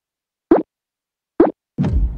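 Two short cartoon 'plop' sound effects, each rising quickly in pitch, about a second apart. Near the end comes a louder low whooshing boom, a character-entrance effect as a Frankenstein monster pops into view.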